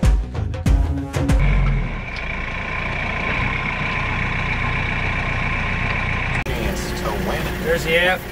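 Background music with drum hits for about the first second and a half, then a Kioti RX7320 tractor's diesel engine running steadily with a high, steady whine. Near the end a man starts talking over the running tractor.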